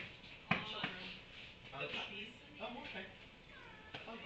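Indistinct speech at a low level, with a sharp click about half a second in.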